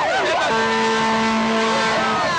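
Rally crowd voices, then, about half a second in, a single steady horn note that holds for about a second and a half over the crowd.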